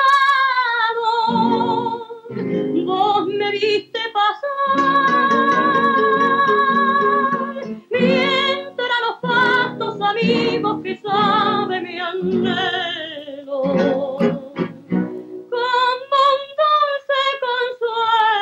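A woman sings a song with vibrato to acoustic guitar accompaniment, holding one long note about a quarter of the way in.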